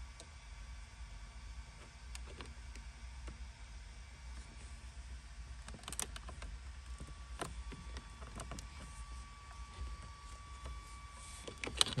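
Faint clicks and taps as a carbon fiber trim overlay is lined up and pressed by hand onto a car's dashboard trim, over a low steady hum.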